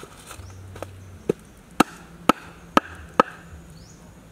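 Meat cleaver chopping through a fish into a wooden chopping board: five sharp chops about half a second apart, after a lighter tap.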